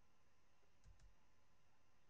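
Near silence: room tone, with two faint mouse clicks in quick succession about a second in.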